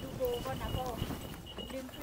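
Faint voices in short phrases that rise and fall in pitch.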